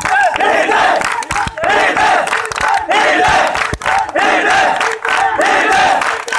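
A large crowd of people shouting and cheering together, loud and continuous, with many voices overlapping.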